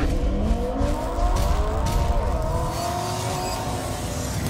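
Car engine revving sound effect: the pitch climbs over about the first second, then holds high over a deep rumble and slowly fades toward the end.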